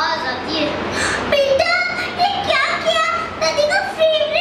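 Only speech: a young boy talking into a microphone in a high, lively voice.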